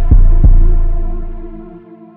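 West Coast–style hip-hop instrumental beat. Two deep 808 bass hits land close together near the start and ring out, fading under a sustained melodic layer. The bass drops out near the end.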